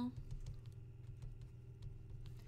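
Faint, irregular clicks and taps of a stylus writing by hand on a tablet screen, over a low steady hum.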